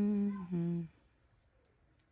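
A woman's closed-mouth hum, "hmm", held on a steady pitch with a brief dip in the middle, ending about a second in. A single faint click follows near the end.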